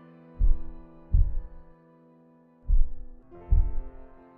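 A slow heartbeat in the soundtrack, deep thumps in two lub-dub pairs, under soft sustained music chords.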